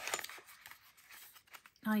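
Small paper box being handled and its end flap worked open: light rustling, scraping and a few soft clicks, loudest at the start. A woman's voice starts near the end.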